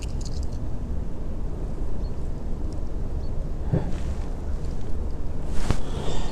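Wind buffeting the microphone: a steady low rumble, with a couple of faint clicks of handling late on.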